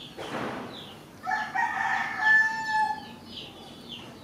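A rooster crowing once, a loud call of about two seconds that starts about a second in and ends in a held note. It follows a brief rushing noise, and faint high chirps repeat steadily underneath.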